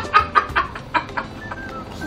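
A child giggling in quick, short bursts that trail off after about a second.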